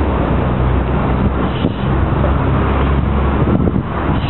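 Steady low rumble of wind buffeting the camera's microphone, loud and unbroken, with no clear events standing out.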